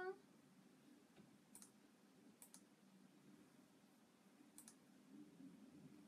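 Near silence: quiet room tone with three faint, sharp clicks spread through it.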